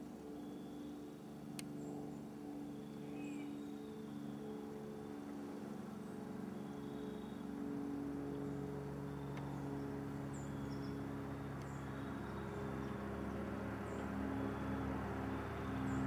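A distant engine droning steadily, growing louder through the second half, with faint high chirps scattered over it and a single small click about one and a half seconds in.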